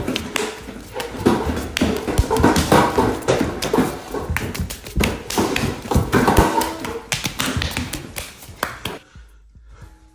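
Dense, rapid taps, thumps and rustling of a staged scuffle, loud and irregular, stopping abruptly about nine seconds in.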